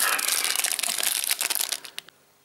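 Plastic protein-bar wrappers crinkling as a bar is pulled out of its cardboard box and handled: a dense run of crackles that dies away near the end.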